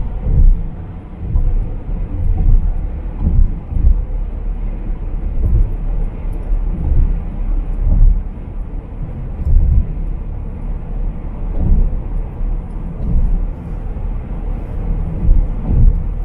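Road and engine noise inside a car cruising at highway speed: a steady low rumble that swells and dips irregularly.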